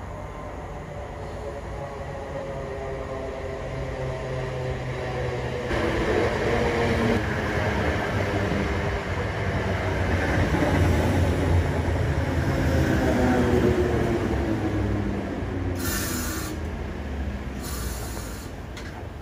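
British Rail Class 317 electric multiple unit running into a station platform and braking to a stop. Its motor and wheel noise grows louder as it draws alongside, with whining tones falling in pitch as it slows. Two brief high-pitched bursts come near the end as it halts.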